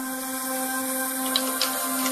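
Background music between stories: sustained held notes, with a few short high notes about a second and a half in and near the end.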